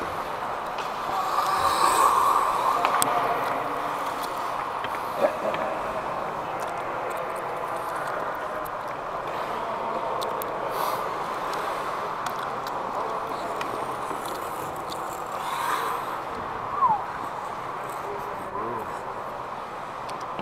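Indoor ice rink ambience picked up by a referee's helmet camera: a steady rush of skating and arena noise with faint distant voices, louder about two seconds in, and a couple of short sharp clicks.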